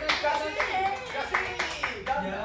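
A group of people clapping their hands, a string of quick claps, with voices calling out over them.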